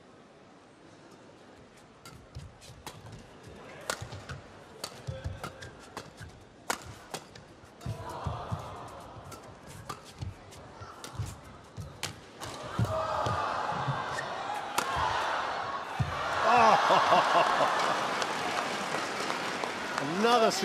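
Badminton rally: a quick, irregular run of sharp racket hits on a shuttlecock with players' footfalls thumping on the court. Near the end the rally is won and a crowd cheers and claps loudly.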